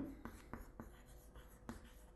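Chalk writing on a chalkboard: a faint, irregular run of small taps and scratches as the letters are stroked out.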